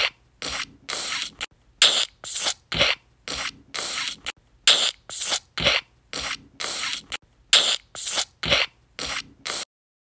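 A quick series of short scratchy, hissing strokes, about two or three a second, that stops just before the end.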